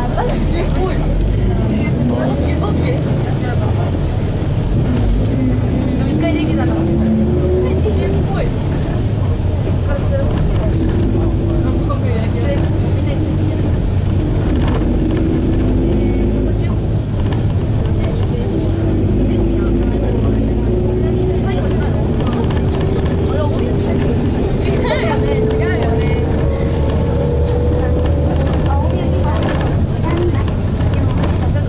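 Nissan Diesel RM bus's FE6E 6.9-litre six-cylinder diesel heard from inside the cabin, pulling away with its pitch rising. It holds at several short steps through the middle as it works through the five-speed manual gearbox, then climbs slowly and steadily in pitch near the end.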